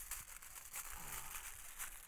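Aluminium foil being crumpled and pressed by hand around an object: a continuous run of crinkling crackles.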